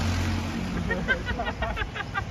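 Street ambience: a steady low hum of traffic under faint voices talking.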